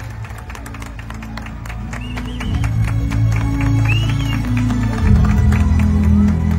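A crowd applauding, with a few high calls over the clapping. Music with low sustained notes comes in about halfway and grows louder near the end.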